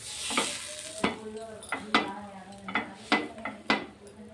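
Butter sizzling under a sandwich toasting on a flat griddle (tawa), as a wooden spatula flips it over, knocking and scraping on the pan about five times. The sizzle is strongest in the first second.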